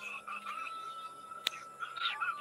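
Faint calling of frogs, a steady high note, with one sharp click about one and a half seconds in.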